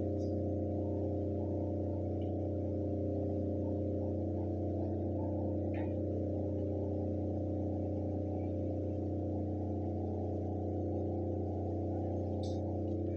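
A steady low drone made of several held tones, unchanging in level and pitch, with a faint tick about six seconds in.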